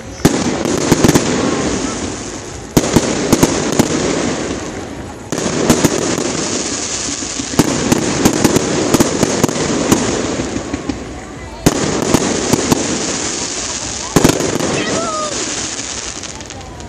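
Aerial fireworks bursting overhead: about five loud shell bursts a few seconds apart, each followed by several seconds of dense crackling that fades before the next burst.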